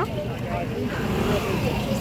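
Street crowd murmur with faint voices of passers-by, over a low rumble of wind buffeting the microphone.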